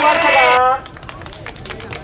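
A man's amplified voice shouting a rally call through a microphone cuts off under a second in. It is followed by a patter of scattered clapping from the crowd.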